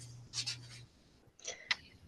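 Faint rustling and a sharp click close to a microphone, with a low hum that cuts off a little under a second in.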